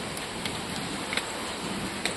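Steady rushing noise of falling water, with a few faint taps like footsteps on tiled steps.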